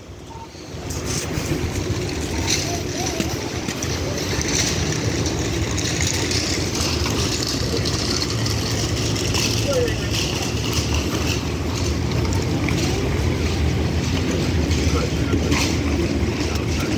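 A police cruiser idling: a steady low rumble with a light hiss over it.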